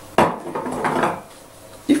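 Blender jug and lid being handled on a kitchen counter, the motor not yet running: a sharp knock just after the start, then lighter clattering for about a second.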